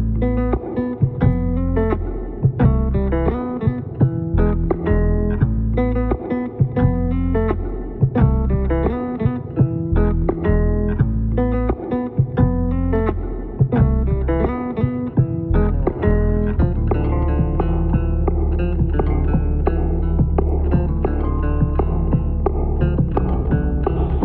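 Electric bass guitar playing a solo instrumental piece: a run of plucked notes and chords, with a held low note underneath from about sixteen seconds in.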